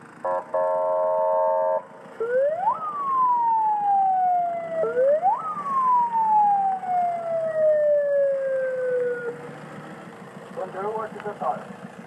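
Police patrol car's electronic siren: a brief steady horn tone, then two wails that each rise quickly and fall away slowly. A loudspeaker voice starts up near the end.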